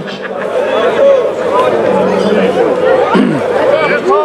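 Many people talking at once: crowd chatter with overlapping voices.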